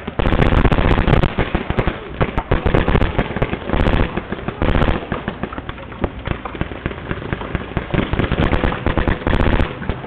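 Paintball markers firing in rapid strings during a game, a dense crackle of closely spaced shots that is loudest in the first two seconds and goes on throughout.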